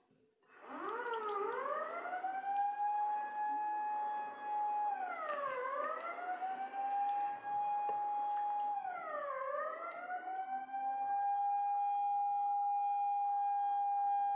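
A siren wailing, starting a moment in. Its pitch rises and holds for a few seconds, then dips and climbs back twice, making three long wails.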